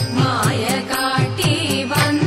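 Thiruvathirakali song: a voice singing a Malayalam melody over a steady percussion beat of about four strokes a second.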